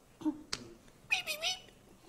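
A short, high-pitched squealing cry, like a meow, that dips and rises in pitch, from a person's voice. About half a second in there is a sharp click.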